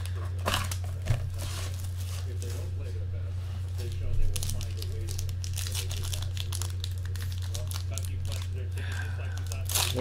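Foil trading-card pack and plastic wrapper crinkling and tearing as they are handled and opened, in a run of short irregular crackles with a couple of sharper snaps. A steady low electrical hum runs underneath.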